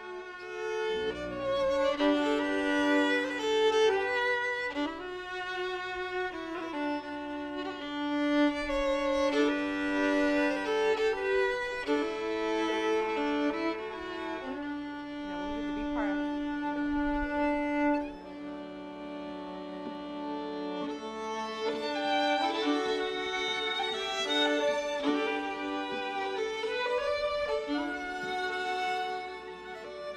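Two fiddles playing a slow tune in the Irish traditional style, with long bowed notes that step from one pitch to the next.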